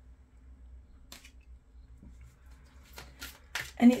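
Tarot cards being handled at the deck: a few short, crisp flicks and slides of card stock, one about a second in and a quick cluster near the end.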